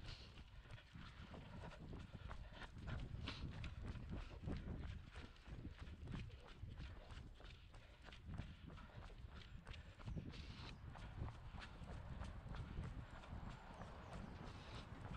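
Running footsteps on stone paving, a steady quick rhythm of footfalls picked up by a head-mounted camera, with low rumble underneath.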